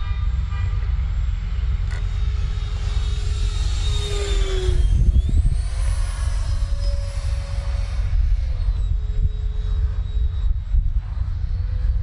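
The 80mm electric ducted fan of a Freewing JAS-39 Gripen RC jet whining in flight overhead. Its pitch dips about five seconds in, climbs higher for a few seconds as the jet manoeuvres, then settles back. Gusty wind rumbles on the microphone underneath.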